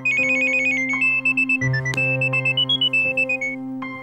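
Mobile phone ringing with a polyphonic electronic ringtone: a quick, repeating melody of high beeping notes over a synth backing, easing off near the end.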